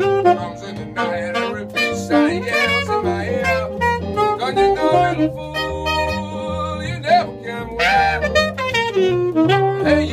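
Jazz saxophone solo over electric keyboard accompaniment, with chords and a stepping bass line, during an instrumental break.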